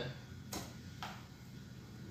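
Two short clicks about half a second apart, from a computer mouse being clicked to change the page shown on the monitor.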